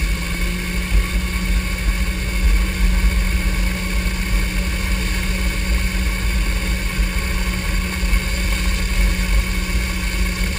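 Motorboat engine running steadily at towing speed, under a constant rush of water spray and wind, with no changes in pitch.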